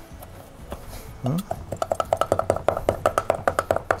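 Large kitchen knife rapidly chopping fresh herbs on a wooden chopping board: a fast, even run of sharp knocks, about eight a second, starting a little under halfway in.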